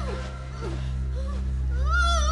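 Several short wailing cries, each rising and falling in pitch, over a steady low drone.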